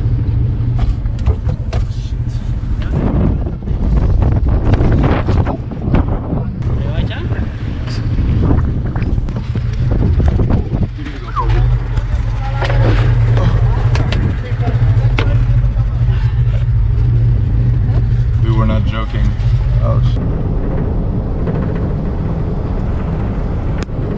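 Car engine running with a steady low drone, with frequent knocks over it and voices in the background.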